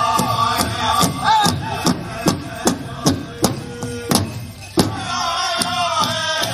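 Powwow drum struck in a steady beat of about two to three strokes a second, with a group of singers chanting over it. The singing drops out about a second and a half in, leaving the drum alone, and comes back near the end.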